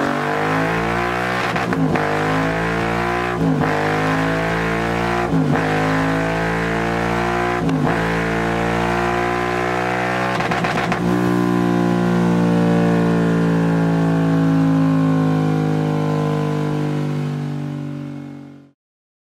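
Royal Enfield Continental GT 650's parallel-twin engine through Scorpion twin slip-on silencers with the dB killers removed, run hard on a rolling-road dyno. It revs up through the gears with a short break at each shift, about every two seconds, then holds high revs for the second half before fading out at the end.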